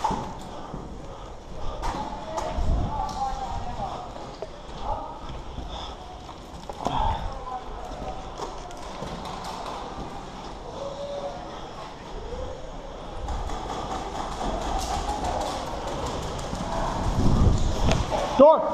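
Footsteps of boots on a bare concrete floor in an empty cinder-block room, with a few heavier thumps about 3, 7 and 17 seconds in.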